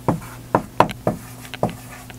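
Marker writing on a whiteboard: a quick irregular run of about six short taps and strokes as the letters are drawn, over a faint steady low hum.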